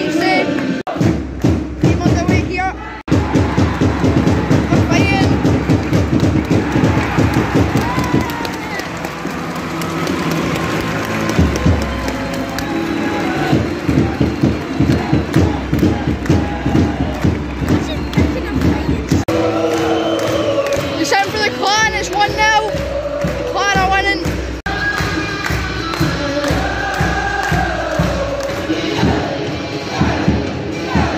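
Ice hockey arena crowd over loud music from the arena speakers, with a fast regular beat through the middle. Voices rise over the crowd in the last third.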